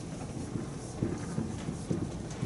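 Marker writing on a whiteboard: a string of short, irregular taps and strokes as the word is written out.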